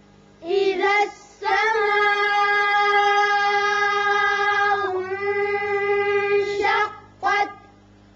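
A child reciting a Quran verse in a high, chanted voice: a short syllable, then one vowel held for about five seconds, the madd of "as-samaa'" stretched out, and a brief closing syllable.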